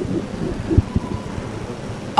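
Low background rumble with two soft, low thumps about a second in: handling noise from handheld microphones held close to a speaker.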